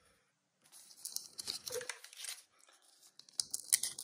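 Foil trading-card pack wrapper crinkling as it is handled, then cut open with scissors near the end, giving sharp crackling snips.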